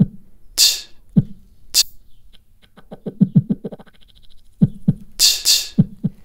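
Looped beatbox-style vocal percussion played back from the LoopTree looper app, chopped into rapid stuttering repeats by its beat repeat and run through a filter. Near the end the full loops come back in.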